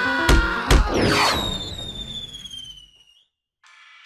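Cartoon sound effects and score: two heavy thumps in quick succession, then a long falling whistle-like tone that fades away. After a brief silence, a brass phrase begins near the end.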